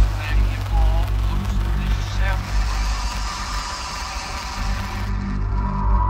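Dark ambient music: a deep, steady drone under a hissing, rumbling noise layer. The hiss drops away about five seconds in, and a sustained mid-pitched tone swells up near the end.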